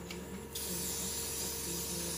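A steady hiss that comes in suddenly about half a second in and carries on, over a faint low hum.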